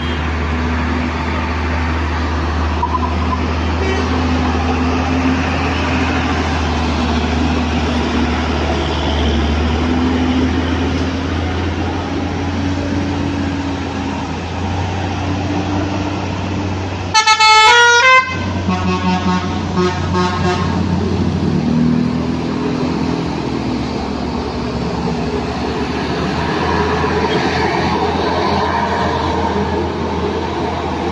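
Heavy diesel truck and bus engines running steadily as they climb a steep hairpin bend. About seventeen seconds in, a loud multi-tone bus horn plays a quick run of stepped notes for about a second, with fainter notes trailing for a few seconds after.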